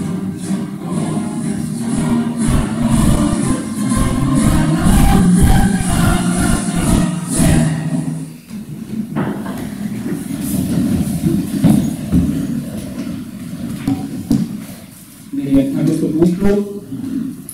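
Recorded music played over the hall's sound system, ending about eight seconds in. It is followed by the shuffling and knocking of people and chairs moving as the standing councillors sit back down.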